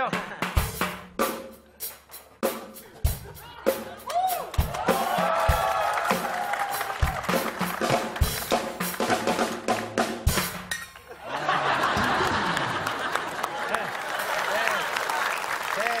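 Drum kit played in a sound check: loose, irregular snare and bass-drum hits with cymbal strokes. After about eleven seconds it gives way to a dense, continuous wash of sound.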